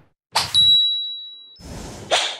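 Logo-reveal sound effect: a quick whoosh, then a bright ding that rings out and fades over about a second. Another whoosh swells in near the end.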